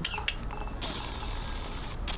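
Six-week-old Maltese puppies playing at close range: a brief high squeak and a few small scuffling clicks near the start, then a steady rustling hiss from about a second in.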